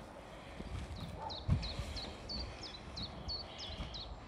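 Plastic kayak hull thudding and scraping on a lawn as it rolls over, the loudest thud about a second and a half in. A small bird repeats a short falling chirp about three times a second from about a second in.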